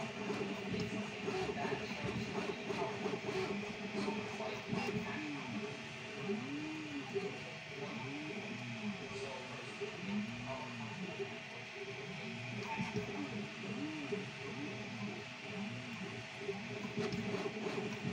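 Original Prusa Mini FDM 3D printer printing: its stepper motors whine in short tones that rise and fall in pitch, over and over, as the print head speeds up and slows down, over a steady fan hum.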